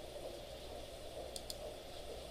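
Two quick computer mouse clicks about a second and a half in, over a faint steady room hum.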